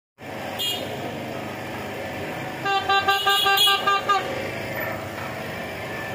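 A horn sounds a held, pitched tone for about a second and a half in the middle, over a steady street-crowd hubbub.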